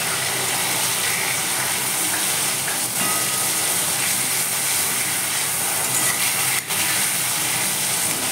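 Whole flat beans (sheem) frying in hot oil in a metal pan: a steady sizzle, with a metal spatula turning them now and then.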